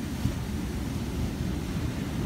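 Wind buffeting the phone's microphone with an uneven low rumble, over the steady wash of surf.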